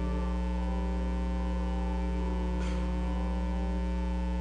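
Steady electrical mains hum, a low buzz with many overtones, running unchanged on the recording. A brief faint noise comes about two and a half seconds in.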